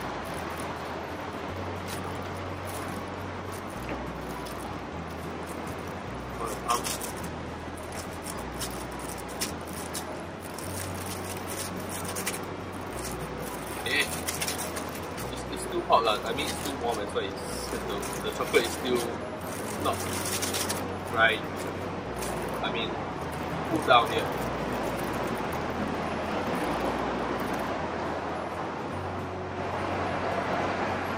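Thin plastic bag crinkling and rustling in the hands now and then, over a steady hum of city background noise.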